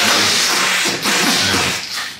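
A loud, dense burst of hissing noise, dipping briefly about a second in. It is test audio played through a Max/MSP patch that segments its input.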